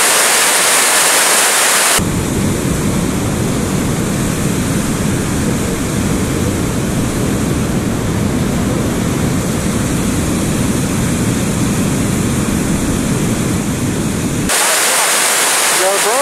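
Steady roar of water pouring over a dam spillway. From about two seconds in until near the end it becomes a duller, lower rumble with a buffeting texture.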